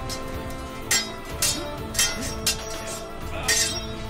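Sword blades clashing in a fight: a series of sharp metallic clangs, roughly one every half second, over background music with held notes.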